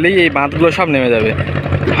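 Speech in Bengali over a steady low engine hum.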